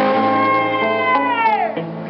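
Female lead vocalist of a live rock band holding one long sung note that slides down in pitch near the end, over electric guitar and bass.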